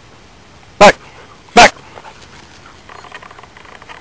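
A black retriever barks twice, short and loud and close by, under a second apart, followed by faint rustling.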